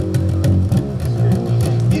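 Live band playing a short instrumental stretch between sung lines: an electric bass guitar line over a steady drum beat.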